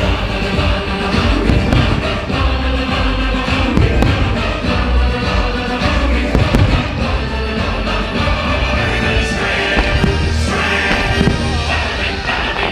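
Loud fireworks-show soundtrack music with fireworks going off over it, heard as scattered bangs and thumps.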